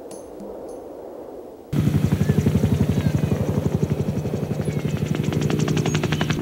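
Faint percussion music fading out, then, a little under two seconds in, a helicopter cuts in loud: rotor blades beating rapidly and evenly over a steady engine hum.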